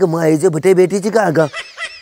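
A person's voice making a drawn-out, wordless sound with a wavering pitch for about a second and a half, then breaking off.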